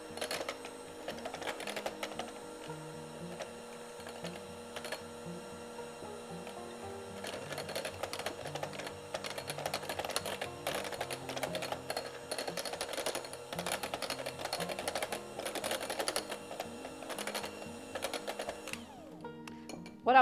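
Electric hand mixer running, its wire beaters ticking against a glass bowl as they whip butter until fluffy, over background music. The mixer stops about a second before the end.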